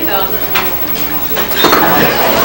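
Tableware clinking (dishes, glasses and cutlery) under murmured conversation from an audience seated at tables; the chatter grows louder near the end.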